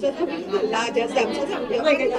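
Several people talking over one another at once: chatter from a group in a hall.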